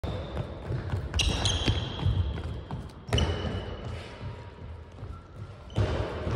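Handball players' running feet and ball on the hardwood court of a sports hall: repeated thuds with sharp impacts, two of them about a second in and one about three seconds in, each followed by a short high squeak, all echoing in the large hall.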